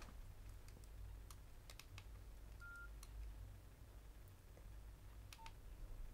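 Faint mobile phone keypad clicks as a text message is typed, with two short key beeps, a higher one about two and a half seconds in and a lower one near the end, over a low steady hum.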